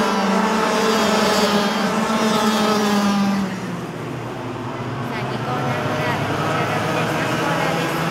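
Several junior racing karts' two-stroke engines running at high revs as they pass, a steady buzz whose pitch sags slightly before it drops away a little past three seconds in. The engine note then climbs again as karts accelerate out of a corner.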